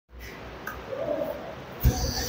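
Faint bird cooing against a quiet room background, then a soft thump near the end.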